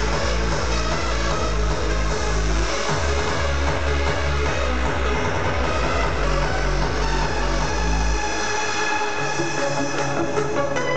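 Hardstyle dance music played loud over a festival sound system and recorded from within the crowd. The pounding kick and bass cut out about eight and a half seconds in, leaving the higher synth lines.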